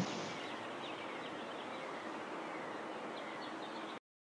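Faint, steady outdoor ambience with small high bird chirps scattered through it.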